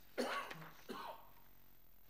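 A person clearing their throat twice in quick succession, the first time louder.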